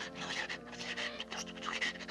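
A cartoon character's quick, short breaths in rapid succession, about six a second, over soft held low notes of music.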